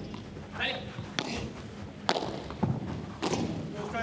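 Padel ball being hit back and forth in a rally: sharp pops of solid rackets striking the ball and the ball meeting the court's glass walls, four hits spaced roughly a second apart.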